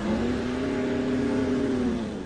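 A monster's roar: one long, held, pitched cry that rises slightly and then sinks as it fades out.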